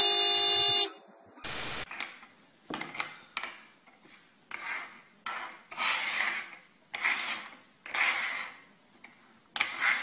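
A car horn sounds once, a steady tone lasting under a second. After a short burst of noise, nut shells are slid and shuffled across a wooden tabletop, a rasping rub about once a second.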